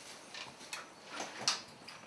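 A few faint, short clicks and light knocks, spaced irregularly: handling at a drum kit before playing.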